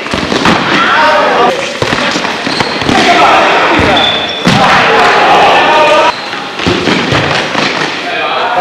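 Several voices shouting over one another on a futsal court in a sports hall, with the thuds of the ball being kicked and bouncing on the hard floor.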